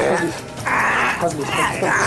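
A boy's harsh, animal-like yells as he struggles against being held: two rough, noisy outbursts, the first just over half a second in and the second near the end.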